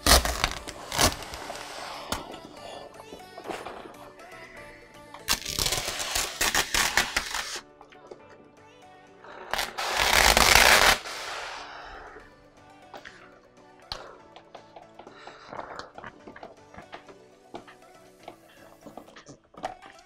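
Background music, with a hand spray bottle misting water onto the glass and vinyl in two long hissing bursts, one about five seconds in and one about ten seconds in.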